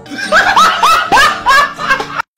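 A person laughing hard in a run of about six high-pitched, rising whoops, with faint music underneath.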